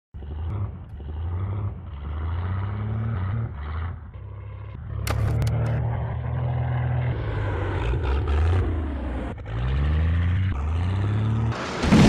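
Low engine drone of a plane sound effect, rising and falling in pitch and dropping out briefly twice, the way an engine sputters. Just before the end a loud explosion bursts in as the plane crashes.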